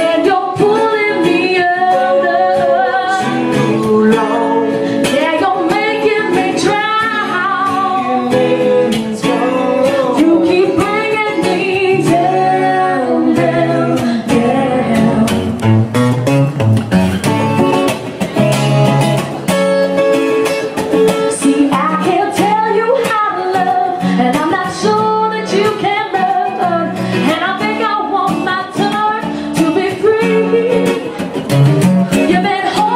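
Woman singing a song live into a microphone, with wavering held notes, accompanied by a man playing acoustic guitar.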